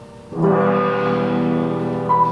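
Live band music: fading grand piano notes, then a loud sustained chord comes in sharply about a third of a second in and rings on.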